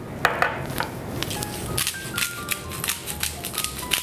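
Hand salt and pepper grinder being twisted over raw chicken, a run of irregular crunchy clicks, with light background music underneath.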